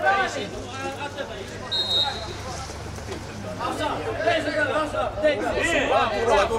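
Overlapping men's voices chatting and calling out among spectators and players, quieter for the first few seconds and busier after about three and a half seconds. A brief high tone, like a whistle or beep, sounds about two seconds in.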